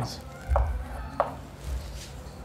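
Chalk writing on a chalkboard: a few sharp taps as the chalk strikes the board, about half a second apart, with light scraping between them.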